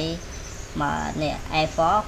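Speech only: a voice narrating, pausing briefly near the start, over a steady low hum.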